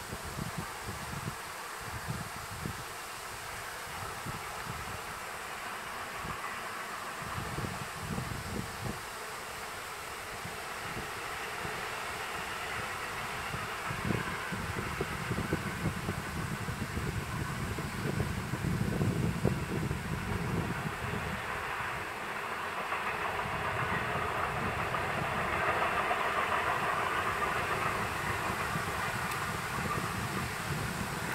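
Distant freight train hauled by a class E94 electric locomotive running by: a steady rumble of wheels on rail that grows louder in the second half, with wind gusting on the microphone.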